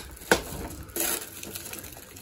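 Clear plastic wrapping crinkling as a hand grabs and pulls it, with a sharp crackle about a third of a second in and another at about one second.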